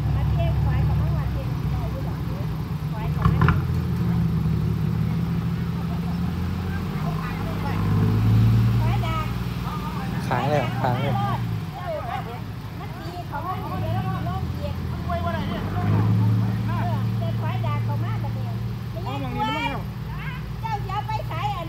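A small dump truck's engine running as the truck drives off, its note swelling and easing, loudest about eight seconds in and again near sixteen. People talk over it.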